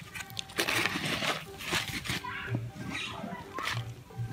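Hands scooping loose garden soil and dropping it into a small plastic flowerpot: a series of short, scraping rustles.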